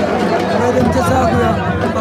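Large stadium crowd of many voices talking and calling out at once, a loud, steady hubbub.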